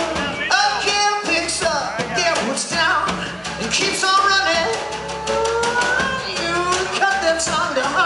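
Live rock band playing a song: drum kit, electric guitars and a male voice singing.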